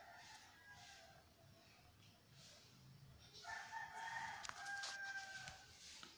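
A faint, distant animal call heard twice: a weak one in the first second, then a louder, drawn-out call of about two seconds starting about three and a half seconds in.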